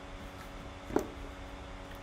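A single short click from the plastic travel lock box as it is opened, about a second in, over quiet room background.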